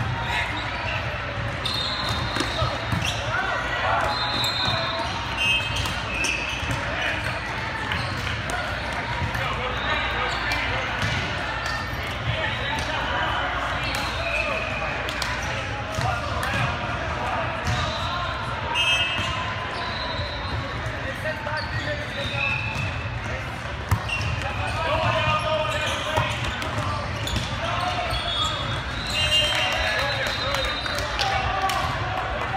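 Busy indoor sports hall during volleyball play: sharp smacks of hands on volleyballs and balls hitting the floor, short high sneaker squeaks on the court, and indistinct calls and chatter from players and spectators, all echoing in a large hall.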